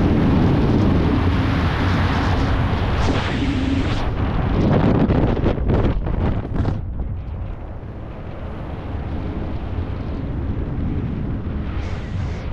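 Wind rushing over an action camera's microphone during a parachute descent under an open canopy, a loud, gusty roar that eases and turns duller about seven seconds in.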